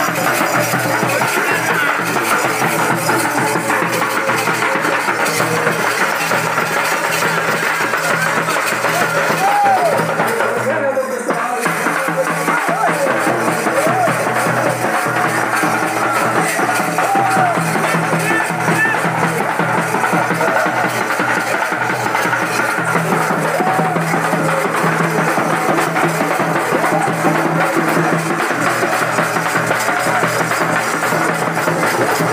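Dappu frame drums beaten with sticks, continuous loud festival drumming with music, with a few short pitch glides now and then.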